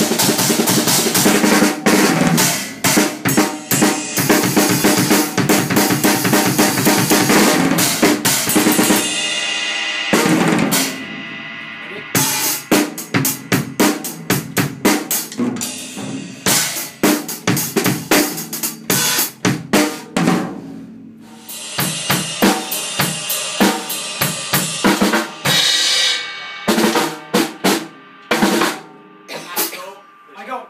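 DW acoustic drum kit played hard: rapid snare and tom strokes over bass drum, under a wash of crash and ride cymbals. The playing breaks off briefly about nine seconds in and again about twenty-one seconds in, then carries on.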